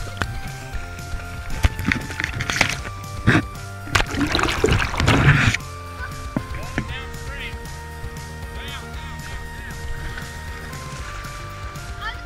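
Shallow creek water splashing and sloshing around a tumbling waterproof camera, with a loud, longer splash about four seconds in, under background music of long held notes.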